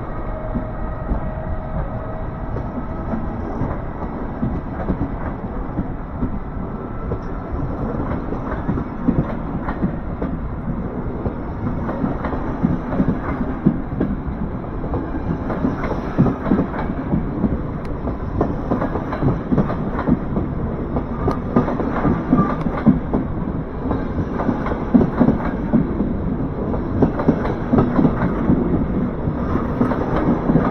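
Passenger coaches of an electric-hauled train rolling past at close range, their wheels clattering over the rail joints, the clacks growing louder and denser in the second half. A faint electric whine from the departing Siemens Vectron locomotive fades away in the first few seconds.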